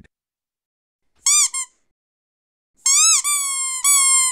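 Squeaky-toy squeaks timed to a marmot being squeezed: two short squeaks about a second and a half in, then a longer, drawn-out squeak near the end.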